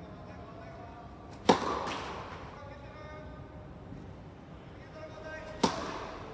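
A tennis ball struck hard by a racket twice, about four seconds apart, each hit a sharp pop that echoes in the indoor hall.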